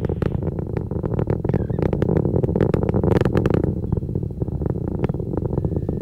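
Atlas V rocket's RD-180 first-stage engine heard from far off: a continuous low rumble with dense crackling running through it.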